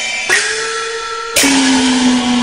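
Cantonese opera music: long held melodic notes broken by two sharp percussion strikes, one about a third of a second in and one just under a second and a half in, the music getting louder after the second.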